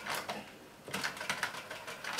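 Cassette transport keys and mechanism of a Toshiba RT-SF5 boombox clicking and clattering as the fast-forward key is pushed, with a few clicks near the start and a quick run of clicks in the second half. The fast-forward key won't lock into place, so it works only while held.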